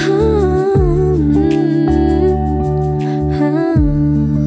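A female voice hums a wordless melody that glides up and down, over the song's backing of sustained low bass notes and soft accompaniment.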